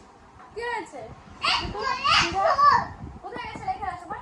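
Small children's voices: high-pitched talking and calling out, loudest between about one and a half and three seconds in.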